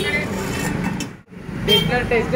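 Busy street noise with people's voices and vehicle sounds. It drops out briefly just past a second in, then returns.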